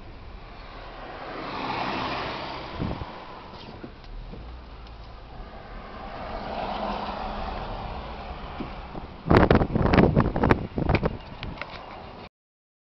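Car driving, heard from inside the cabin: a steady road and tyre noise that swells twice. Near the end comes about two seconds of loud, irregular bumps and rumbles.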